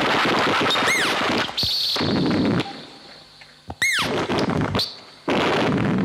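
Ciat-Lonbarde and modular synthesizer patch producing dense crackling electronic noise, with a falling chirp-like pitch sweep about every three seconds. About halfway through, the crackle drops away to a thin high tone for a couple of seconds, then comes back.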